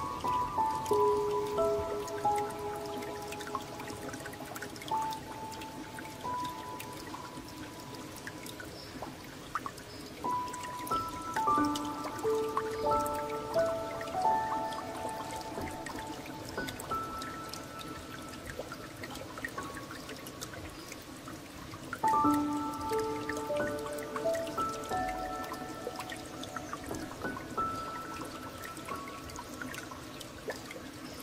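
Slow solo piano, single notes struck one at a time and left to ring, in phrases that start afresh about ten and twenty-two seconds in. Beneath it, a steady trickle of flowing water.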